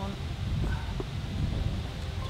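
Wind buffeting the microphone outdoors, a steady low rumble, with a faint knock about a second in as a wooden nest box on a tree is handled.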